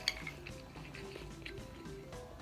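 Metal spoon clinking and scraping against a rice bowl as rice is scooped, with a sharp clink just after the start and a fainter one about a second and a half in. Quiet background music runs underneath.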